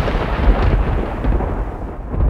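A dramatic thunder-like boom sound effect, rumbling low and slowly fading away.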